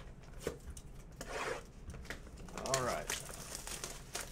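Plastic wrap on a trading-card hobby box crinkling and tearing as it is handled and opened, with light clicks of the box being picked up.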